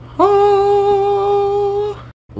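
A single sung 'aah' note for the reveal, scooping up briefly at the start and then held at one steady pitch for about a second and a half before stopping.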